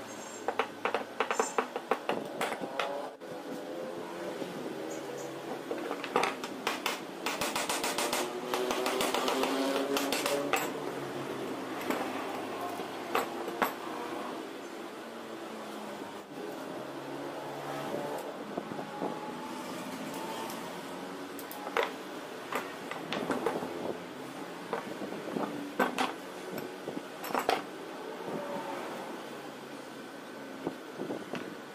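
Metal clinks, taps and knocks of a starter motor being taken apart by hand, its parts and hand tools set down on a wooden bench, scattered throughout. Under them runs a steady background hum with a pitched tone that swells in the middle.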